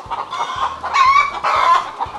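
Hens clucking: a run of short calls, loudest about a second in and again a little after.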